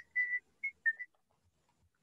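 About four short, high whistle-like chirps in the first second, the first one the longest, fainter than the voices around them.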